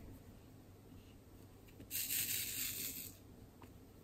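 Loose resin diamond-painting drills rattling in a brief shake lasting about a second, around the middle.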